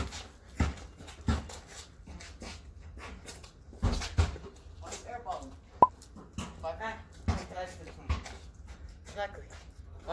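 A basketball bouncing on a concrete driveway in scattered low thuds, with a sharp metallic clang about six seconds in as a shot hits the rim.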